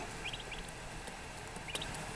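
Eastern wild turkey poults peeping faintly, a few short, high peeps scattered through the moment.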